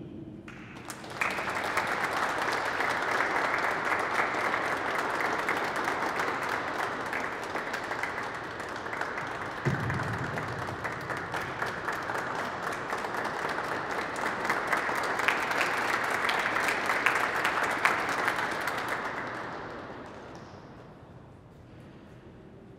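Audience applauding in a large cathedral. The clapping starts about a second in, holds steady, and dies away near the end.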